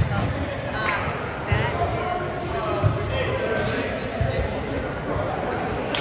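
A volleyball being hit and bouncing on a hardwood gym floor: a few sharp knocks a second or more apart. Players' voices carry through the large, echoing gym.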